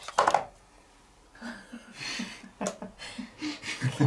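A quick cluster of plastic clicks as an ink pad case is handled and opened on the table. After about a second of quiet, soft murmuring voices and light handling noise follow.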